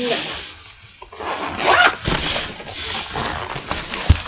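The zipper of a zip-around school binder being pulled shut in a few strokes, with rustling as the binder is handled.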